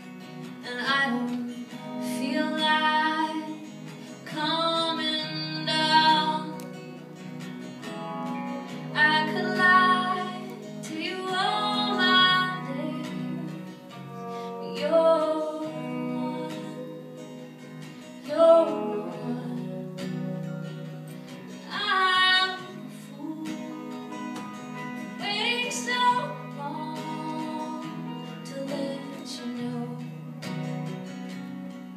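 A woman singing a song live with guitar accompaniment, in sung phrases separated by short pauses over steadily strummed guitar chords.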